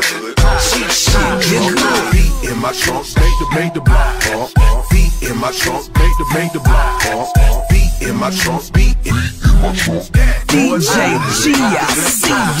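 Hip hop track: rapped vocals over a heavy bass-and-drum beat, with a rising sweep near the end.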